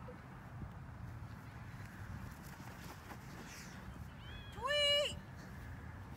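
Steady low wind rumble on the microphone, with a girl's single short, high-pitched cry near the end, rising, held briefly and falling.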